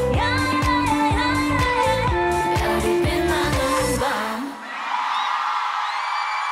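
A K-pop song with female vocals over a pulsing bass beat reaches its final note and stops about four seconds in. An audience cheering and screaming follows.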